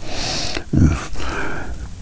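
A man's audible breath in through the nose, followed by a brief low voiced hesitation sound in a pause in his speech.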